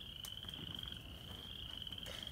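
Faint, steady, high-pitched animal trill running unbroken, with one soft click shortly after the start.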